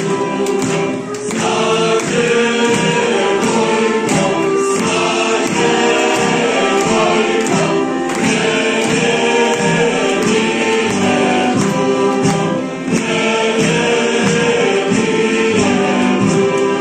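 A group of children singing a folk song together to accordion accompaniment, with a steady beat.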